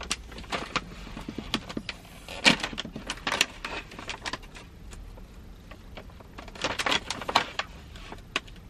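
Crinkling and crackling of a plastic snack bag being handled and worked open by hand, in irregular bursts, loudest about two and a half seconds in, again at three and a half, and near the end.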